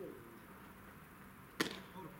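A single sharp pop about one and a half seconds in: a pitched baseball smacking into the catcher's leather mitt.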